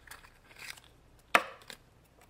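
Plastic Mashems toy capsule being handled and pulled open by hand: soft rubbing, then one sharp plastic click a little over a second in and a lighter click just after.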